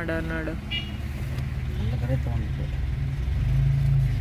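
Car engine running at low speed, heard from inside the cabin as a steady low hum that grows a little louder near the end.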